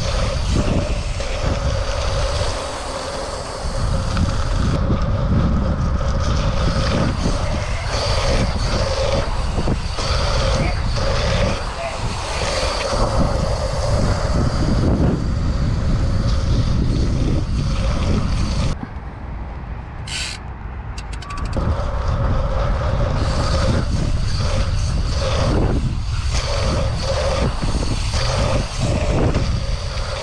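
Wind buffeting the camera microphone, together with the rolling noise of a BMX bike's tyres on the track during a fast run. The sound is steady and loud, with a short quieter stretch about two-thirds of the way through.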